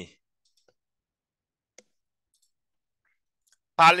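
Two faint, sharp computer mouse clicks in an otherwise quiet room, one just under a second in and a clearer one a little under two seconds in. These fit text being selected in a PDF.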